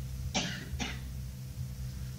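Two short throat-clearing coughs about half a second apart, over the steady low hum of an old tape recording.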